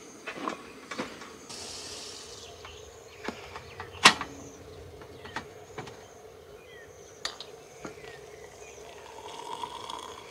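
A portable butane camp stove burning with a faint steady hiss under an aluminium kettle, with scattered clinks and one sharp knock about four seconds in as a steel travel mug and its lid are set down on a plastic stool. Near the end the kettle is lifted and hot water starts to pour into the mug.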